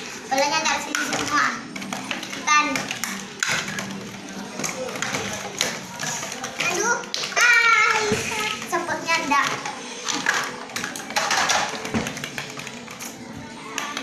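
Young children's excited chatter and shrieks during a game, with light taps of small plastic toy balls knocking together and dropping into a cardboard box on a tiled floor.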